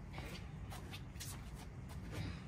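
A microfiber towel wiping over a car's body panels in about four short swishing strokes, over a steady low rumble.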